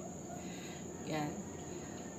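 A steady high-pitched tone runs unbroken in the background, with a woman's single short spoken word about a second in.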